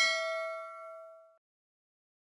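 A single bell-like ding sound effect ringing out and fading away, gone about a second and a half in. It is the notification-bell chime of a subscribe animation, played as the bell icon is clicked.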